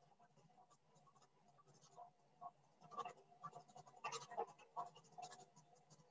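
Near silence over a faint steady hum, with faint irregular scratching and clicking from about two seconds in.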